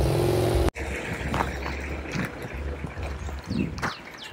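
A motor vehicle engine running with a rising pitch, cut off abruptly less than a second in. A quieter low rumble follows.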